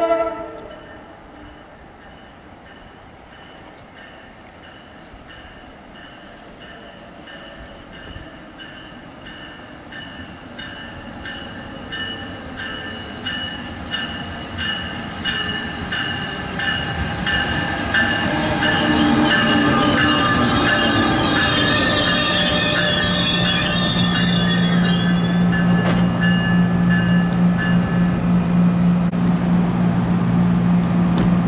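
A brief horn blast at the start, then an NJ Transit electric locomotive and its multilevel coaches approaching and pulling into the station, growing steadily louder with high steady whines. The brakes and wheels squeal as it slows to a stop, leaving a steady low hum from the standing train.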